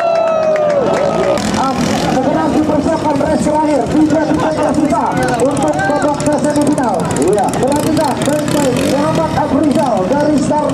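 A ketinting racing canoe's small engine whines at high pitch, the pitch falling over the first second. Then talking voices dominate for the rest, with engine noise underneath.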